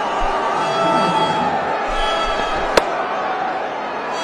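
Steady stadium crowd noise, with a single sharp crack of a cricket bat striking the ball about three-quarters of the way through: a lofted shot that carries for six.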